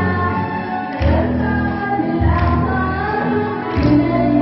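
Female voice singing into a microphone, amplified in a hall, over music with a deep bass line whose notes change every second or so.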